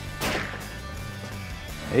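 A single rifle shot about a quarter second in, with a short echo off the indoor range, under steady background music.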